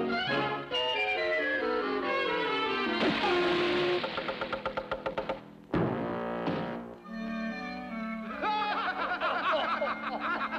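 Orchestral cartoon score with brass playing a run of falling notes, then a sudden crash a little past the middle followed by a rising slide, and wavering high notes near the end.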